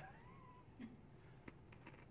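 Near silence: a faint crunching as a Whopper malted milk ball is bitten and chewed, a few soft crunches about a second in, after a brief faint hum at the start.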